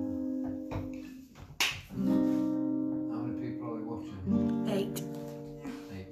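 Acoustic guitar strummed a few times, each chord left to ring and die away: a sharp strum about a second and a half in and another just past the middle.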